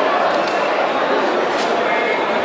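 Indistinct chatter of many voices at once, steady and echoing in a large sports hall.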